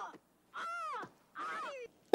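Crow-like cawing: a run of short calls, each rising then falling in pitch, a little under a second apart. The last of one call is heard at the start, then two more follow.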